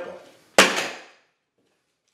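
A single sharp hammer blow on a laminate flooring sample lying on a plywood subfloor, dying away quickly.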